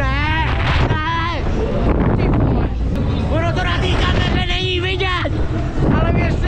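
A rider yelling on a fairground thrill ride: several drawn-out yells with wavering pitch, over a steady rush of wind buffeting the onboard microphone.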